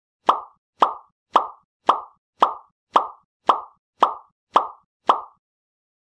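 A run of ten identical short pop sound effects, evenly spaced a little under two a second. Each is a quick mid-pitched pop that dies away at once.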